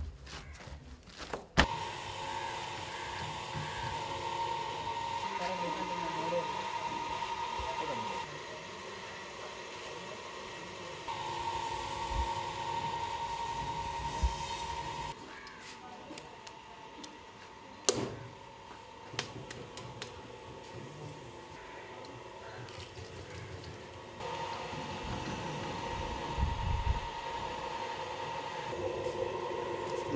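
A steady motor hum that starts and stops three times, with a few sharp knocks between.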